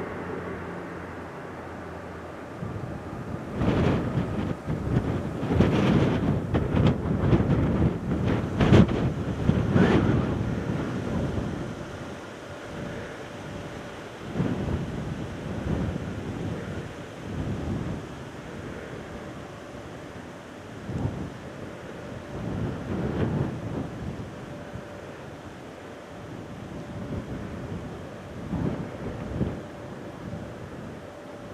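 Airbus A380's four jet engines at takeoff power, heard from behind as the airliner rolls away: a deep rumble with crackling surges, loudest in the first ten seconds, then falling back and fluctuating as it climbs away. Wind buffets the microphone.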